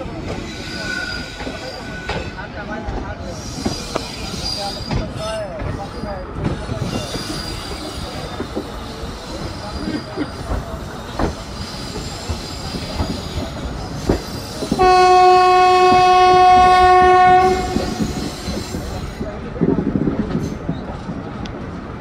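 Coaches of an Indian Railways express rolling out of a junction, heard close from an open coach door: a steady rumble with wheels clicking over rail joints and points and faint high wheel squeal on the curve. About fifteen seconds in, a train horn sounds one long steady note for nearly three seconds.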